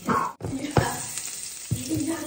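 Butter sizzling as it melts and foams in a hot nonstick frying pan, with two short knocks, about a second apart, as chopsticks push the butter around the pan.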